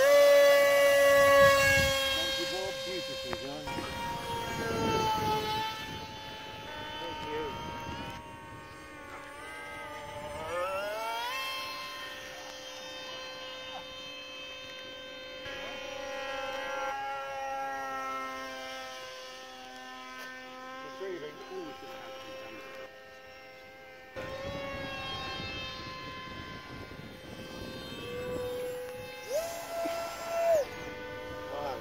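Radio-controlled model aircraft under power: a high-pitched motor-and-propeller whine that sweeps sharply up in pitch at the start as the throttle opens for the launch, loudest there. The pitch then keeps rising and falling as the fast models pass back and forth, with another short rise near the end.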